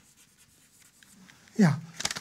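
Chalk writing on a blackboard: faint taps and scratches as a word is written. Near the end a man's voice says "yeah", the loudest sound.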